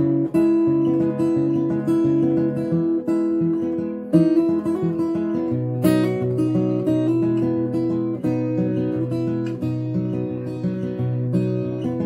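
Steel-string acoustic guitar with a capo, fingerpicked in a Travis-picking pattern: the thumb alternates bass notes while the fingers pick melody notes on the higher strings. About halfway through comes one sharper, brighter strike.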